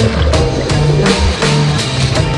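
Background electronic music with a steady drum beat and a deep bass line.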